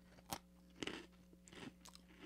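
Faint crunching as a Yan Yan biscuit stick is bitten and chewed: a sharp crunch about a third of a second in, another just before one second, then a few smaller crackles.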